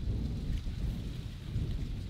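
Wind buffeting an outdoor microphone: an uneven low rumble that rises and falls in gusts.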